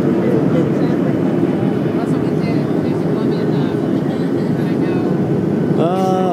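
Steady cabin noise of a Boeing 737 airliner in flight, its engines and the rushing airflow heard from a window seat over the wing.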